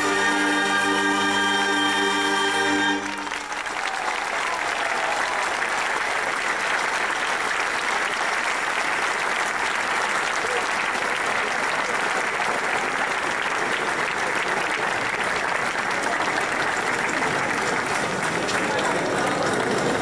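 A wind band with a piano accordion holds a final sustained chord, which cuts off about three seconds in. Loud, steady audience applause follows.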